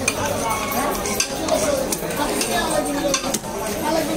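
Large knife knocking and scraping against a wooden log chopping block as rohu fish is cut, irregular sharp knocks over a busy clattering background.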